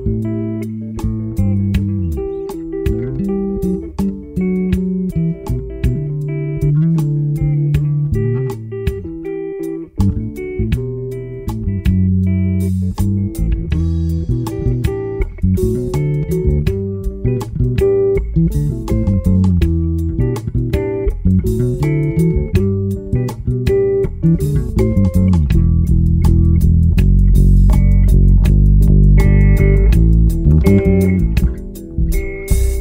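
Live electric bass guitar playing a melodic line, with frequent note changes and slides between notes, accompanied by an electric guitar. It grows louder and fuller over the last few seconds.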